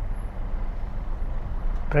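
Steady low rumble inside a car stopped in traffic: the engine idling with cabin and road noise.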